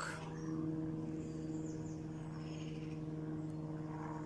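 A steady low hum holding one constant pitch throughout, with a few faint, short high chirps in the middle.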